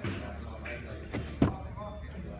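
Two sharp knocks at a car door a quarter of a second apart, the second louder, from handling the door of an Audi S4 saloon, with a murmur of voices behind.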